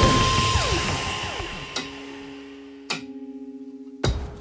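Sound effects for an animated intro. A loud wash fades away, crossed by falling pitch glides. A click comes a little under two seconds in and a sharper click about three seconds in, which sets off a low hum pulsing rapidly.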